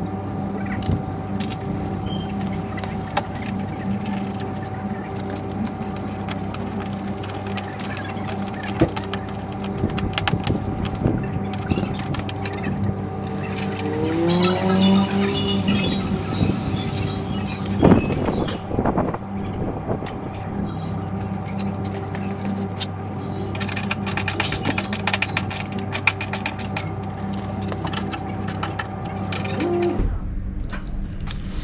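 Clicks and knocks of a plastic car headlight unit being handled and pushed into place in the front end, over a steady hum, with one louder knock a little past halfway and a quick run of clicks near the end.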